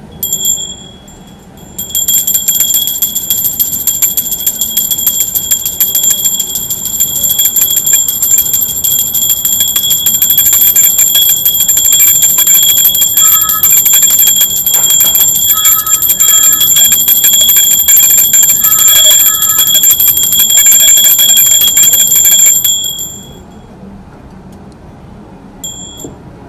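Small brass hand bell (puja ghanti) rung rapidly and without pause for about twenty seconds during an aarti, a bright high ring made of many quick strokes. A short ring comes just after the start, and another brief one near the end.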